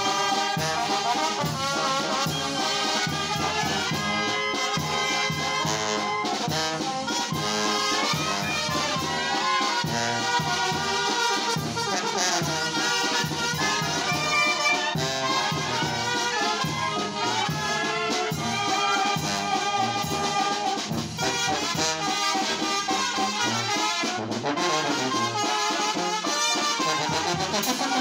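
Brass band playing in the open, trombones prominent, over a steady even beat that runs without a break.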